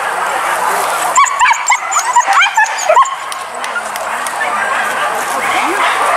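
Leashed hunting dogs yelping and barking in a quick run of short, high calls from about one to three seconds in, over people talking in the background.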